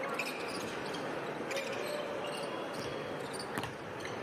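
Live basketball play on a hardwood court: a ball bouncing, with a few sharp knocks, over a steady arena crowd hum.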